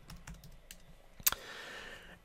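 Typing on a computer keyboard: a few light keystrokes, then a single sharper, louder key press about a second and a quarter in.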